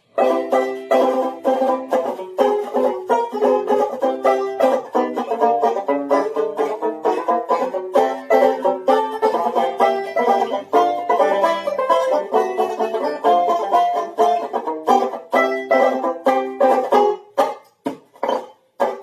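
Tenor banjo played solo in a trad jazz chord-melody style, with rapid strummed chords. The playing starts suddenly and pauses briefly near the end.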